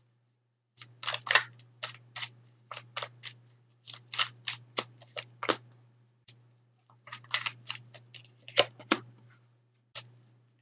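Tarot cards being shuffled, drawn and laid down: quick runs of sharp clicks and snaps, several a second, broken by short pauses.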